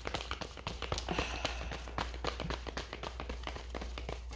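A deck of tarot cards being shuffled by hand: a steady run of rapid soft clicks as the card edges slap and slide against each other.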